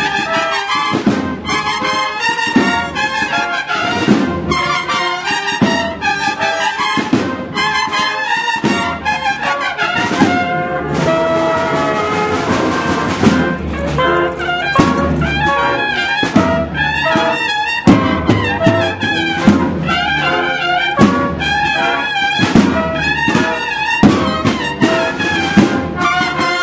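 Brass band playing live: trumpets, flugelhorns and tuba in a rhythmic march, with a long held chord about eleven seconds in.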